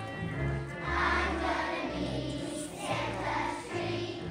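Choir of young children singing a song together, with instrumental accompaniment holding steady low notes beneath the voices.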